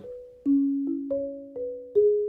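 Marimba playing soft two-note chords: pairs of notes struck together and ringing out as they fade, with about five new strikes starting about half a second in.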